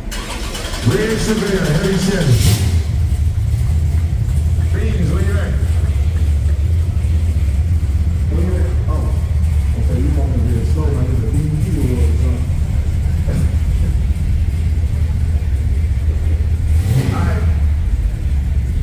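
A car engine starts up about two seconds in and then idles with a steady low rumble, with people talking over it.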